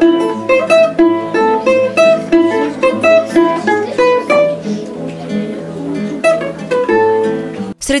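Balalaika and classical guitar playing a duet: a plucked melody over a steady bass line. The music breaks off just before the end.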